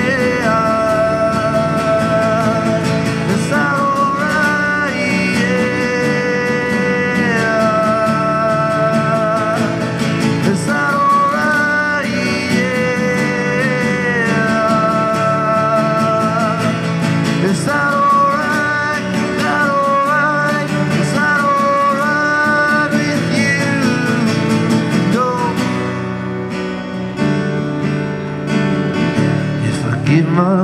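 Strummed acoustic guitar with a voice singing long held notes that slide between pitches; the sung line thins out near the end while the guitar carries on.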